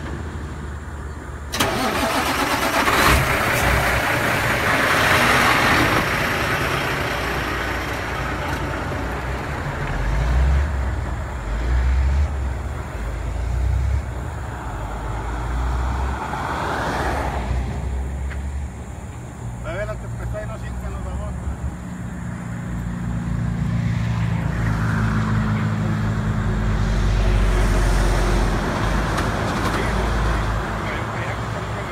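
Highway traffic: truck and car engines running, with a low engine hum that swells about ten seconds in and again near the end as vehicles pass.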